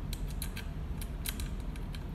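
Small metal clicks and scrapes, a few irregular ticks about a second, as a metal hanging ring is screwed by hand into the grow light's heat sink.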